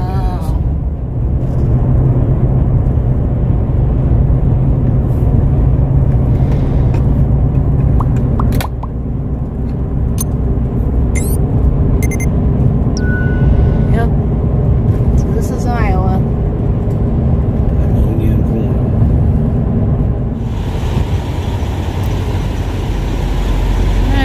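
Road noise inside a moving truck's cab: a steady, loud low rumble of tyres and engine at highway speed. About 20 seconds in it changes to a brighter, hissier noise.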